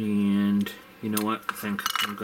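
Hobby knife blade being twisted in a hole in a plastic model hull, chattering against the plastic with a low buzzing squeal as the hole is reamed out to fit a magnet. One stroke of about half a second comes first, then three shorter ones.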